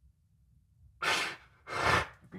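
A man's two heavy, audible sighs: the first about a second in, the second near the end, after near silence.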